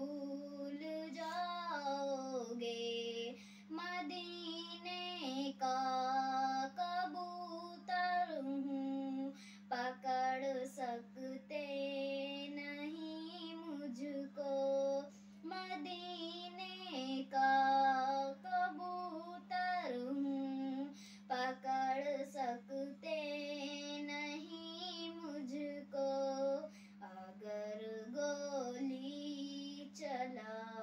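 A young girl singing a Hindi poem unaccompanied, in sustained phrases with short breaks between them. A steady low hum runs underneath.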